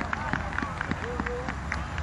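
Footballers' shouts and calls on the pitch with the patter of running feet; one call is held for about half a second a little past the middle.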